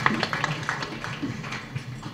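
An audience laughing, with a few scattered claps, dying away to a lull.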